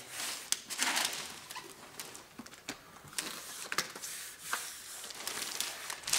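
Hands pressing and rubbing a vinyl design plank down onto a self-adhesive underlay mat: soft swishes with scattered light clicks and knocks as the plank is set down and handled.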